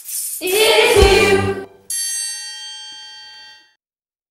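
A group sings the song's final held note over instruments, stopping sharply about a second and a half in. A single triangle strike follows and rings out, fading away over nearly two seconds.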